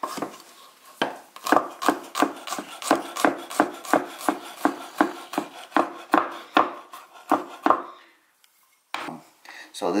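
Chef's knife mincing garlic cloves on a wooden cutting board: a quick, even run of blade strikes, about three or four a second, that stops with a short silent gap near the end before a few more strokes.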